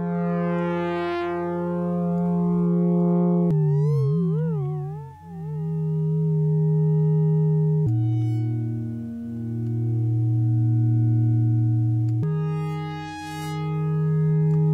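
Sustained synthesizer chord drone from a Bitwig Poly Grid patch, with chords picked by a Markov chain that change about every four seconds. A slow random LFO wobbles the pitch, most plainly for a couple of seconds after the second chord begins, and the volume swells gently.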